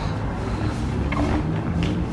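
Steady low rumble of road traffic, with faint music over it.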